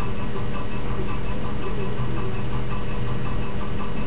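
Steady low hum with hiss, even throughout: background room noise.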